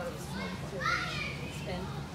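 High-pitched children's voices calling out, with no clear words, in short bursts about a second in and again near the end.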